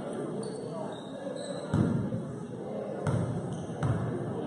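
A basketball bouncing on the gym floor three times, at uneven gaps: a little under two seconds in, at about three seconds, and near the end. The bounces sound over the murmur of spectators talking in the gym.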